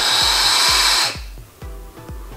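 A long drag on a sub-ohm vape kit: a steady, airy hiss of air drawn through the tank's atomizer while the device fires, stopping about a second in. Background music with a steady low beat runs underneath.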